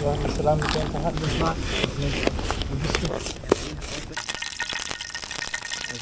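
Metal camping cookware being handled: pot, tongs and a tin can clinking and clicking in a string of sharp knocks, with someone talking briefly in the first second or so.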